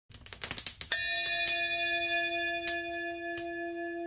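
A quick flurry of small metallic strikes, then a bell struck once about a second in, ringing on in one long steady tone with a few light clicks over it.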